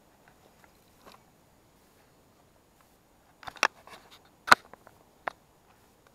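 Handling noise as fishing gear is moved through bankside vegetation: a few sharp, irregular clicks and crackles, a cluster about three and a half seconds in, the loudest a second later, and a last one just after five seconds.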